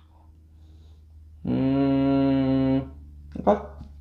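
A man humming one steady low note for about a second, midway through.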